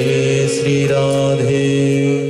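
Voices chanting a Hindu devotional mantra in long, held notes at a steady pitch.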